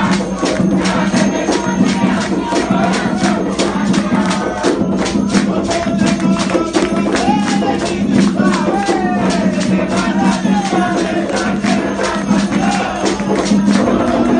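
Live ritual music at an Umbanda ceremony: a fast, steady drum rhythm of about five strokes a second, with voices singing a ritual song over it, most clearly in the second half.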